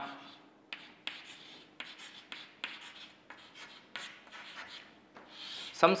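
Chalk writing on a chalkboard: an irregular string of short scratches and taps as a line of letters is written by hand.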